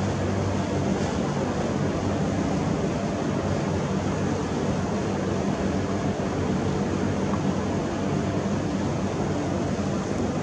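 Steady mechanical background noise: a continuous rushing hum with a faint low drone underneath, unchanging throughout.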